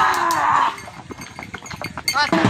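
Bull calling out loudly for the first moment, then quieter, with scattered light clicks as it runs on its tether.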